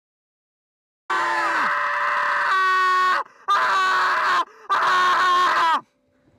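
Human screaming in three long, loud bursts with short breaks between them, the last cut off abruptly.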